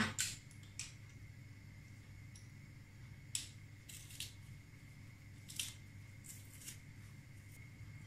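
A few faint, short clicks and clacks from a small kitchen utensil handling garlic cloves over a glass bowl, the sharpest about three and a half and five and a half seconds in. Behind them is a quiet room with a faint steady high whine.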